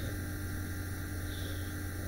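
Steady low electrical mains hum with a faint hiss on the recording.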